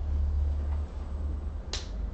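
Steady low room rumble, with one sharp click near the end.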